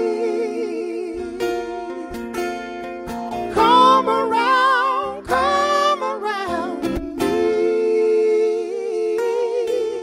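Live male vocals without words: wavering sung notes with vibrato, layered over a steady low drone, with sharp percussive clicks through it. The sung notes swell loudest about four seconds in.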